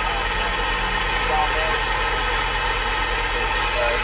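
Semi truck's diesel engine idling: a steady low hum with an even hiss, heard from inside the cab.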